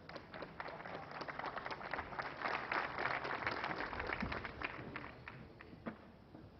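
Audience applauding: a patter of handclaps that swells to its fullest about halfway through and thins out to a few scattered claps near the end.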